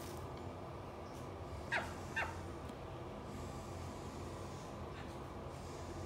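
Call duck giving two short quacks about half a second apart, each falling in pitch, around two seconds in.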